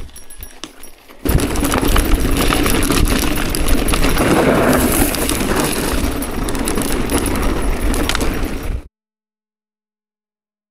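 Mountain bike descending rough, dry dirt singletrack: tyres crunching over loose ground and the bike rattling and clicking over bumps, with wind rumbling on the camera microphone. It grows loud about a second in and cuts off suddenly near the end.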